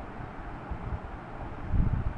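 Steady hiss and low rumble of a voice-recording microphone's background noise, with a brief low swell near the end.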